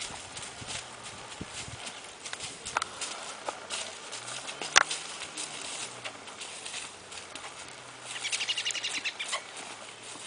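A horse's hooves stepping at a walk on dry grass and leaf litter: irregular soft crunching footfalls, with one sharp click about halfway through. Near the end comes a short run of rapid high ticking.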